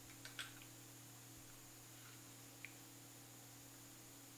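Near silence with a faint steady hum, broken by a few small clicks in the first half-second and one more a little past halfway, as a plastic microscope slide is set into place on the microscope stage.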